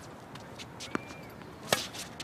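Tennis ball struck by rackets on a hard court during a doubles rally: a fainter hit about a second in, then a loud, sharp hit near the end.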